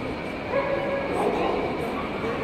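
A dog giving a drawn-out, wavering cry that starts about half a second in, over crowd chatter.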